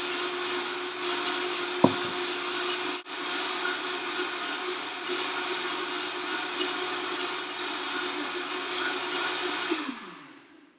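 Vitamix blender running steadily as it blends a green smoothie of almond milk, frozen berries and kale, with a sharp click a little under two seconds in. Near the end it is switched off and its motor pitch falls away as it winds down.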